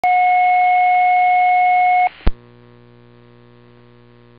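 Fire dispatch alerting tone received over a scanner radio: one steady, high, pure tone held for about two seconds, then a sharp click about a second later and a faint steady hum from the open radio channel.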